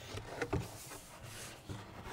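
A stiff board box being handled and its glued sides pressed together: soft rubbing of board, with a light knock about half a second in.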